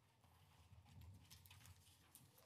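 Near silence: hearing-room tone with a faint low hum and a few scattered faint clicks.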